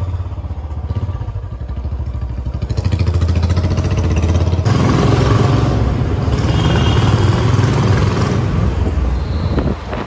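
Royal Enfield Bullet's single-cylinder four-stroke engine running under way, its low, even exhaust beat carrying steadily. It gets louder about halfway through, as the bike rides through a road underpass.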